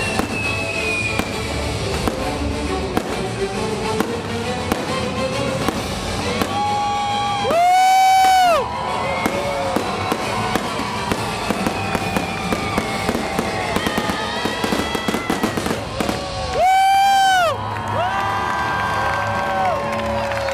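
A fireworks display bursting and crackling over background music, with a dense run of crackles in the second half. Two loud, held tones of about a second each come about eight seconds in and again near seventeen seconds.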